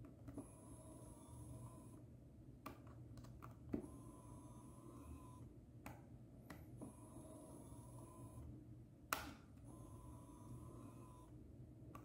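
Kodak EasyShare Z760's zoom lens motor whirring faintly as the lens zooms in and out, in four runs of about a second and a half each. Light clicks come between the runs.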